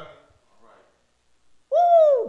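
A woman's voice letting out a long, high exclamation like "whoo" near the end, its pitch falling away as it ends, after a near-silent pause.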